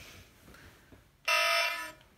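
A toy iCarly remote plays a short electronic buzzer-like sound effect: one steady, loud tone lasting under a second, starting a little past a second in.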